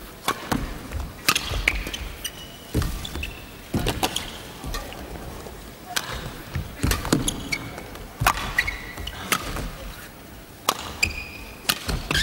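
Badminton rally: rackets striking the shuttlecock back and forth, a sharp crack about every second, with short squeaks of shoes on the court between the hits.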